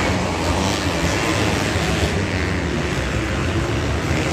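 Several motocross dirt bikes racing around an indoor arena dirt track, their engines revving together in a steady, dense wash of sound.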